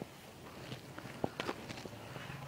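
Faint footsteps: a few light, short steps in the second half as a person walks up.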